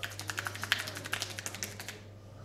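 Rapid tapping and patting of hands on a head during a barber's massage: a quick, even run of sharp taps, about ten a second, the loudest a little before the middle.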